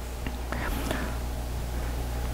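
A pause in the speech: a steady low electrical hum, as from the microphone's sound system, under faint room tone, with a few faint short sounds in the middle.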